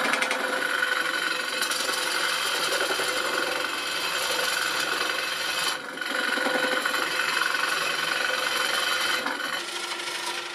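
Turning tool cutting inside a large pine vessel spinning on a wood lathe: a continuous rasping hiss of the cut, broken briefly a little past the middle and easing near the end.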